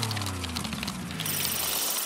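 Musical transition sting: a low tone sliding down in pitch with a whoosh, then a high shimmering ring that begins a little past halfway and slowly fades.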